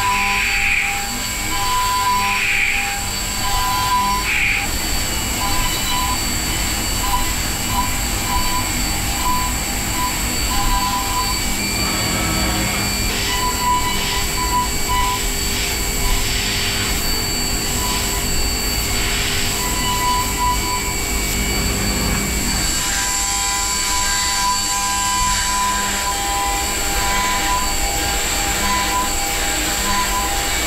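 CNC milling machine cutting metal parts with an end mill under flood coolant: a steady high whine, with a mid-pitched cutting tone that breaks on and off over the hiss of coolant spray.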